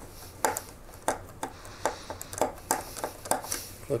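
Small precision screwdriver driving a tiny screw into a plastic model part, making short clicks about three times a second with each turn of the handle.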